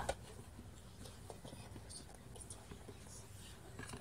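Faint scraping and small scattered clicks of a plastic utensil stirring glue-and-detergent slime in a plastic tub.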